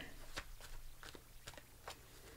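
A deck of tarot cards being shuffled by hand: faint, irregular soft clicks and rustles of cards sliding against each other.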